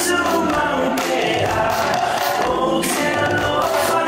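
A Pacific Island dance song: a group of voices singing together over music, with several sharp percussive hits.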